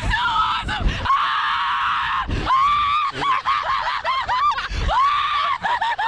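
Two young women screaming and laughing with thrill on a fairground slingshot ride: several long, high screams, each up to about a second, between shorter laughing shrieks.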